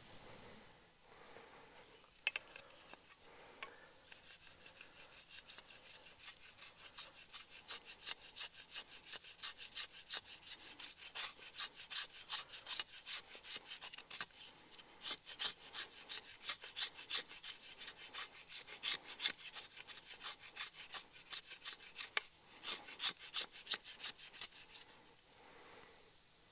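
A wooden stick scraped again and again along the sharpened edge of a Cold Steel Special Forces shovel, shaving off feather-stick curls in quick, steady strokes, two or three a second. A sharp click about two seconds in.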